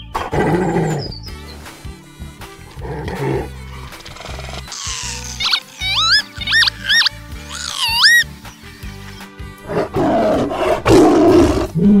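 Cartoon sound effects over background music with a steady bass line: a run of about five rising, whistle-like bird calls in the middle, then a tiger's roar near the end.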